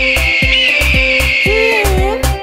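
A long, high eagle screech sound effect, held with slight wavers and stopping near the end, over background dance music with a steady drum beat.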